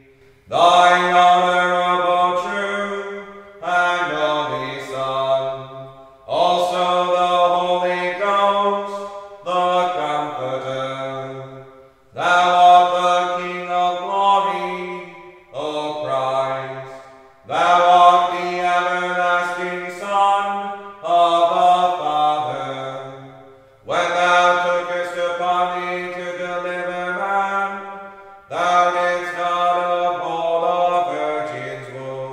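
Chant sung in phrases of two to four seconds on long, steady held notes that move in steps, with short breaks for breath between phrases.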